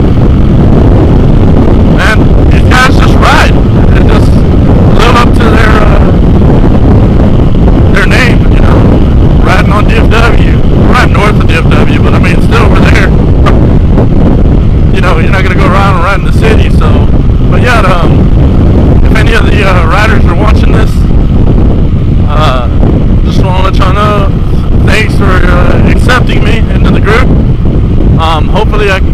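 Loud wind buffeting on a helmet-mounted microphone while riding a Yamaha WR450F dual-sport bike at road speed, with the engine running under the roar.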